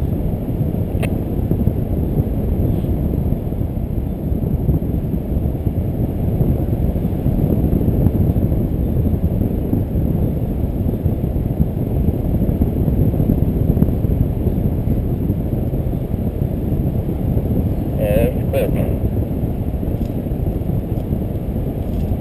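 Airflow buffeting the camera microphone of a paraglider in flight, a steady low rushing without letup, with a short crackle about four seconds before the end.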